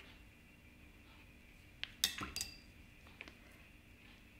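A few light clinks of a paintbrush knocking against hard painting gear, clustered about two seconds in with one more near the end, over a faint steady room hum.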